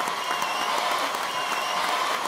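Television studio audience clapping and cheering, a steady wash of applause throughout.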